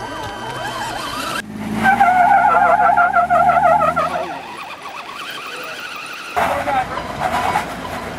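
Off-road vehicle engine running, with a loud wavering high squeal lasting about two seconds, in a sequence of abruptly cut sounds.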